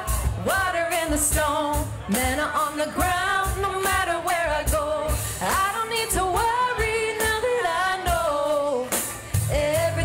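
Live worship song: a lead singer's melody over a band with a steady drum beat and bass.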